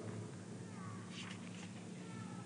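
Faint room tone in a pause between sentences, with a steady low hum. Two faint, short falling squeaks come in the middle.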